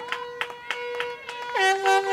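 Several horns blowing long held notes, some bending up and down in pitch, over scattered hand clapping: a welcome for a yacht arriving at the finish of an ocean crossing.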